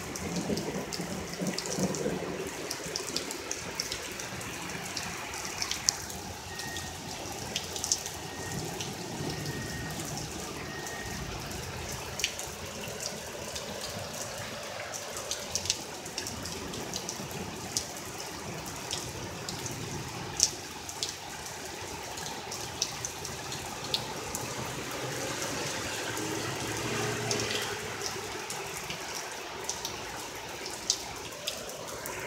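Heavy rain falling steadily, with scattered sharp taps of drops striking close by.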